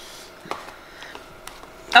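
A quiet pause in a small room, with a small click about half a second in and a couple of fainter ticks later, like objects being handled on a table.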